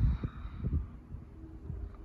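Handling noise: a few low bumps and a faint rustle as the hand-held recording device and paper brochure are moved, with a faint steady hum in the background.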